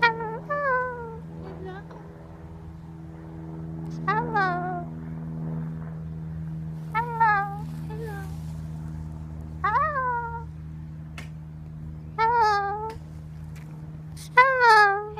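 Moluccan cockatoo calling close up: about five short calls, each rising and then falling in pitch, spaced two to three seconds apart. A steady low hum runs underneath.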